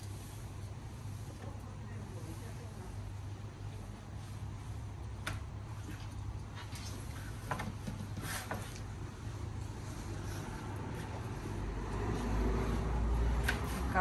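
Kitchen knife cutting a celery stalk on a plastic cutting board: a few scattered sharp taps and crunches over a steady low hum.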